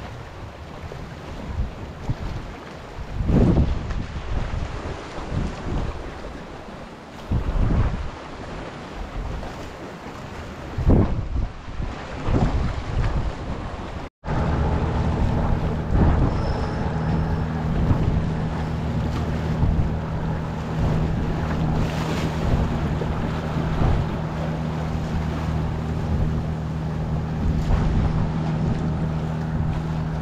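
Sea waves washing and splashing against concrete breakwater blocks, with wind buffeting the microphone. After a cut about halfway through, a steady low engine-like hum runs under the surf.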